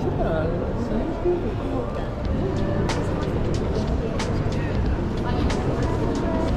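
Busy pedestrian crowd: many people talking at once, with scattered sharp clicks and a steady low rumble underneath.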